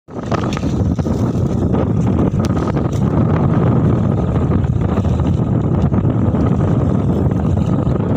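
Steady, loud, low rumble of wind buffeting the microphone on an outrigger boat at sea, with a few faint knocks.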